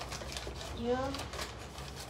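A paper fast-food bag crinkling in two short spells as hands rummage inside it, over a steady low hum in the room.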